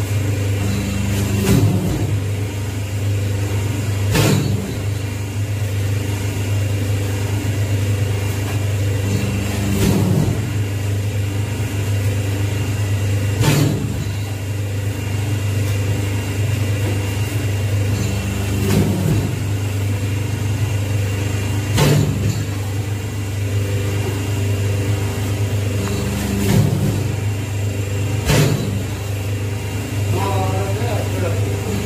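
Semi-automatic hydraulic single-die paper plate machine running: a steady low hum from its hydraulic pump motor, with a sharp knock every three to five seconds as the die press cycles.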